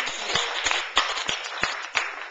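Audience applauding: a dense patter of many hands clapping, with louder single claps standing out about three times a second.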